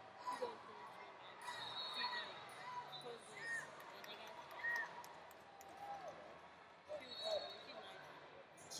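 Wrestling shoes squeaking on the mat in short scattered chirps as the wrestlers move their feet, over the hum and distant voices of a large arena hall.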